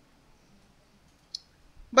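A quiet pause broken by one short, sharp click about a second and a half in, then a man's voice begins right at the end.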